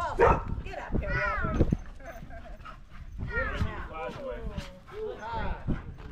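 Dogs barking several times, with people's voices mixed in.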